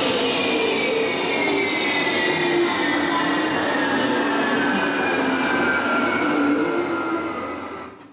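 A recorded sound effect played over a loudspeaker: a steady rushing noise with several tones sliding slowly downward together, fading out just before the end.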